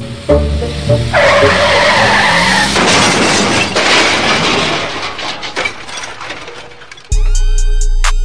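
Film soundtrack music gives way, about a second in, to a loud tire screech. This is followed by a long noisy burst that fades away over several seconds. A hip-hop beat with heavy bass starts near the end.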